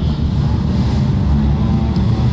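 Porsche 911 rally car's flat-six engine idling steadily with a deep, even note.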